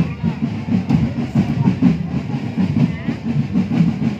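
Marching drum band percussion playing a fast, dense rhythm of drum strokes.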